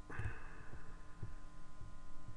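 Faint recording background: a steady electrical hum with a light hiss and irregular soft low thumps, no speech.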